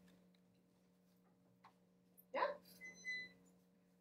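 Quiet room tone with a steady low electrical hum, a single faint click about one and a half seconds in, and a brief high-pitched squeak about three seconds in.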